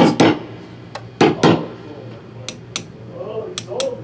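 Metal screwdriver tapping on an electric guitar's humbucker pickup, a tap test of the pickups and wiring, heard as a series of sharp knocks, mostly in pairs, about eight in all. A steady low amplifier hum runs under it.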